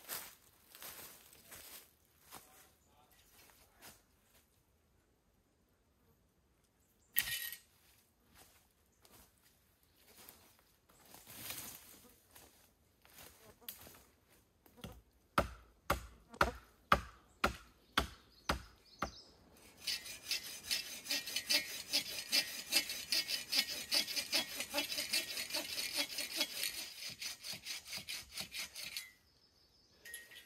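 A hand saw cutting into a fallen log. Around the middle come a few seconds of sharp knocks, then about nine seconds of steady, rapid sawing strokes that stop just before the end.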